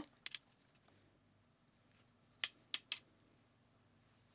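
A few light clicks from a makeup brush and powder palette being handled: two faint ticks near the start, then three short, sharper clicks about two and a half seconds in, with near silence between.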